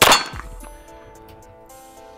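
A single shot from an Archon Type B 9mm pistol, fired one-handed. It is one sharp crack right at the start that rings out and fades over about half a second.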